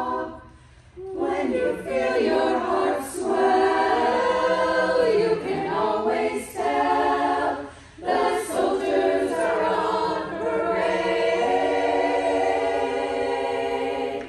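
Women's choir singing a cappella in close harmony: held chords that change and glide. The singing breaks off briefly about half a second in and again just before eight seconds.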